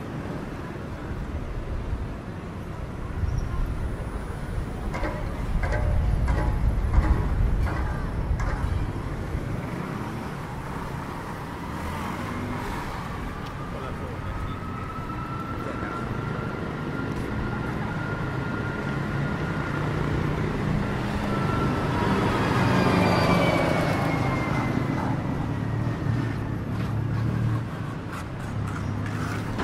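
City street traffic: cars and motorbikes passing, with a heavy vehicle's low rumble swelling a few seconds in. Later an engine whine glides up and then down in pitch as a vehicle passes close, loudest shortly before the end.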